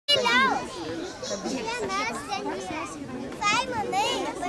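A group of young children's voices chattering and calling out, mixed with adult speech, as they play together.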